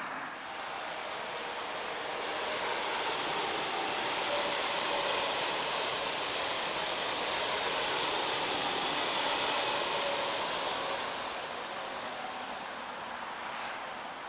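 A train passing on an elevated viaduct: a steady rushing sound that builds up over the first few seconds, holds loudest through the middle, then dies away near the end.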